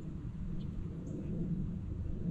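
Steady outdoor background with a low rumble, typical of wind on the microphone, and no distinct event.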